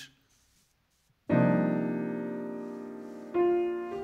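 Grand piano: after about a second of silence, a full, complex jazz chord voiced with a fourth in the middle is struck and left to ring and slowly fade, and a second chord follows about two seconds later.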